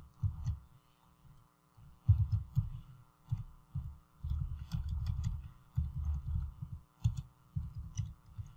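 Computer keyboard typing, picked up mostly as bursts of dull low thuds with light key clicks on top. A steady electrical hum runs underneath.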